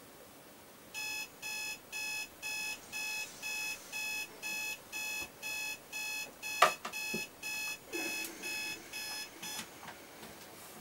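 Digital bedside alarm clock beeping, about two electronic beeps a second, until it is switched off shortly before the end. A sharp knock, the loudest sound, comes about two-thirds of the way through as a hand reaches for it, with bedding rustling after.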